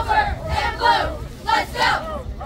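Several voices shouting, a few short, loud yells in quick succession, over an outdoor crowd.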